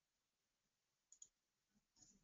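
Near silence, with two faint clicks close together just over a second in.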